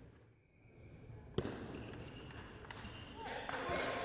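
A table tennis ball bouncing: one sharp click about a second and a half in, then a few lighter clicks, with voices in the hall starting near the end.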